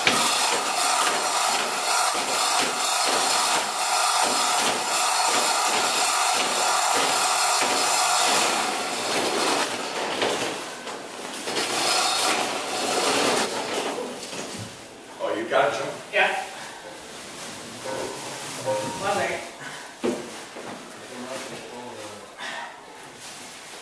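Manual chain hoist being hauled by its hand chain to lift a wooden boat hull, the chain rattling through the block with a steady, regular beat for about the first nine seconds. It then goes quieter, with indistinct voices near the end.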